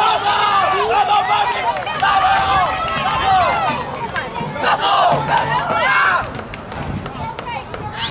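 Several voices shouting over each other at a soccer game, loud for about six seconds and then dying down.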